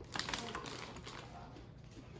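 Quick run of light plastic clicks and crackles from a sealed boba tea cup and its straw being handled, densest in the first half-second or so, then fading to a few faint ticks.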